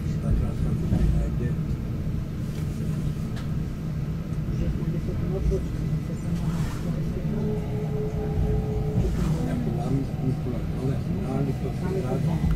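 Steady low rumble of a narrow-gauge electric railcar running, heard from inside, with a few scattered clicks from the running gear and a brief steady whine in the middle.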